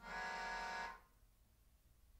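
An improvising ensemble of saxophones and keyboards sounds one short held tone, about a second long, steady and rich in overtones, that cuts off sharply.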